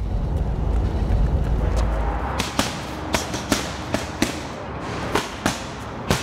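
Punches landing on focus mitts: a string of sharp smacks, about two a second, starting a little over two seconds in. Before them there is a low, steady rumble.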